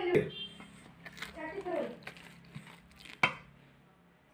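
Quiet talking in short phrases, broken by a few sharp knocks; the loudest knock comes about three and a quarter seconds in.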